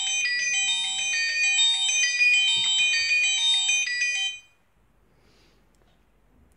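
V8 smartwatch playing a ringtone melody as its find-my-watch alert, set off from the phone's companion app. The tune stops abruptly about four and a half seconds in.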